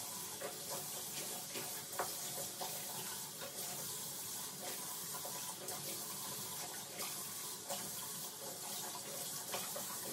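Water running steadily from a bathroom sink tap, with sponge rubbing and a few light knocks as the faucet and basin are wiped.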